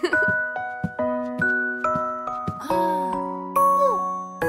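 Slow children's lullaby music played on bell-like chimes, each struck note ringing and fading, about two notes a second. Two short falling glides sound near the end.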